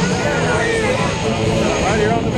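Lockheed C-130 Hercules' four turboprop engines droning loudly as the aircraft comes in low, mixed with a voice over a public-address system.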